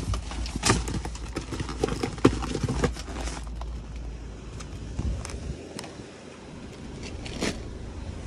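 Cardboard snack-cake boxes and plastic trash bags being handled in a dumpster: rustling with sharp knocks and clicks, busiest in the first three seconds, then only a few scattered clicks.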